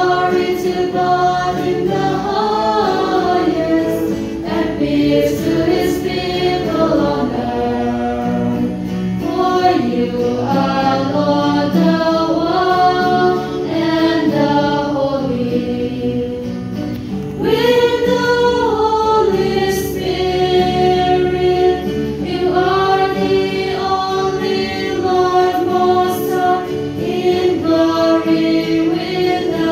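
Church choir singing a hymn in slow, held phrases, with a brief pause a little past halfway before the singing starts again.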